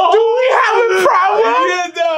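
Men's voices yelling and whooping in one loud, long, wavering cry, with a sharp click about a second in.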